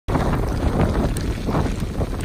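Strong wind from a hurricane's outer band rumbling steadily on the microphone, with surf behind it.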